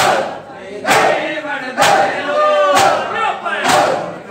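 A crowd of men doing matam, striking their chests in unison about once a second, with chanting men's voices between the beats.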